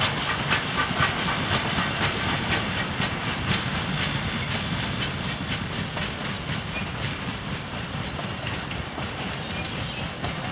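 C17 class steam locomotive 967 and its passenger carriages rolling past, the wheels clicking over the rail joints several times a second above a steady rumble. The clicking grows a little softer toward the end as the carriages go by.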